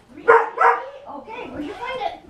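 A dog giving two short, loud yipping barks in quick succession, followed by softer vocal sounds.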